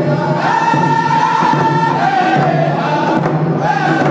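Group of male voices singing a hand-drum song in unison on long, held notes, with rawhide frame drums beating underneath.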